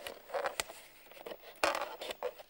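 Scissors cutting into a hard plastic punnet, making small clicks and crackles as the plastic gives. The loudest crunching snip comes about one and a half seconds in.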